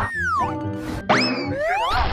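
Background music with cartoon sound effects: a falling pitch glide at the start and a sharply rising glide about a second in.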